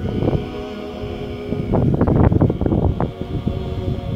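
Klapa group singing a cappella in close harmony, holding long chords. Gusts of wind buffet the microphone, loudest about two to three seconds in.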